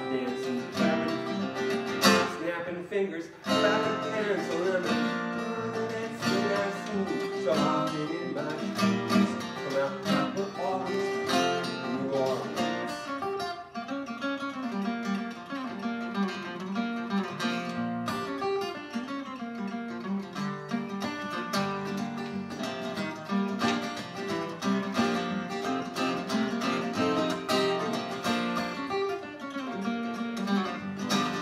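Acoustic guitar being played, a run of plucked notes and chords.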